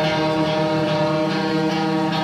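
Live rock band music, with guitars holding a sustained chord.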